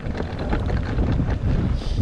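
Wind buffeting the microphone in a loud, gusty rumble as an electric mountain bike rolls fast down a dirt track.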